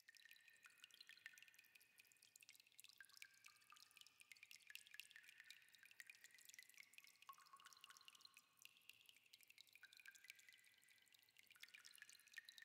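Very faint, scattered high-pitched ticks, some with short ringing pings after them, over a low hiss.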